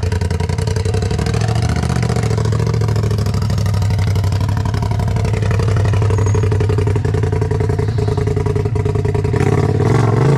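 Off-road buggy engine running steadily at low revs with a rapid, even pulsing note as the buggy crawls down a rocky ledge slope, growing a little louder near the end.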